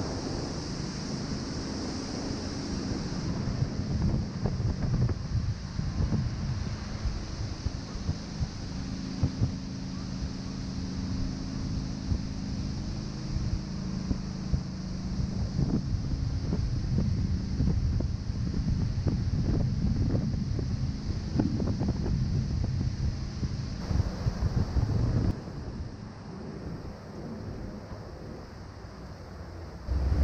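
Wind buffeting the microphone over the steady drone of a moving tour boat's engine and the rush of water along its hull. The noise drops noticeably about 25 seconds in.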